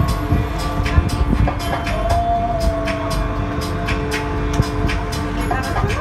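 Motor yacht's engine running under way with a steady low drone, with music and its regular beat playing over it.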